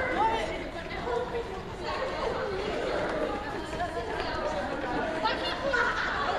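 Many schoolchildren talking at once in a gymnasium: a steady hubbub of overlapping voices as they jog.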